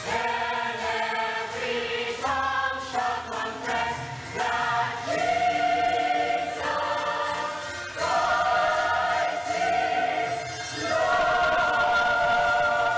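Mixed church choir of men's and women's voices singing a hymn in harmony, moving through phrases and holding long sustained chords about five seconds in, again around eight seconds, and near the end.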